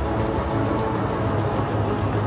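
Music playing over an arena sound system, with sustained low bass notes.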